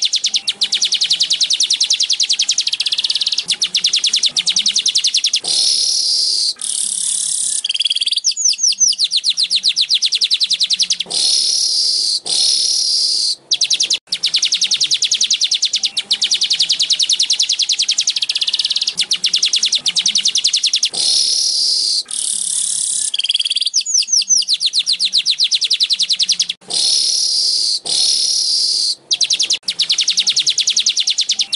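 Streaked weaver (burung manyar) song: a fast, high-pitched chattering trill of rapid ticks in phrases, with a run of falling notes about eight seconds in and again near the end. The same sequence of phrases comes round again about every fifteen seconds.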